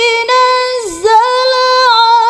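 Melodic Qur'an recitation in tilawah style: a single high voice holds long, ornamented notes with a slight waver, with a brief dip in pitch and loudness about a second in.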